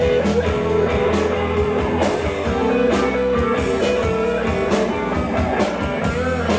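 Live rock band playing: two electric guitars over a drum kit, with a sustained lead guitar line on top.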